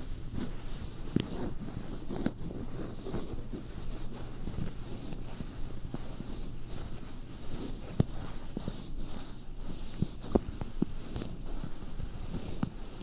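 Close-miked ASMR trigger sounds: a run of irregular soft clicks and pops, a few of them sharper, over a steady low hum.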